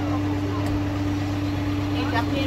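Zoo mini train's engine running with a steady low hum and a constant droning tone.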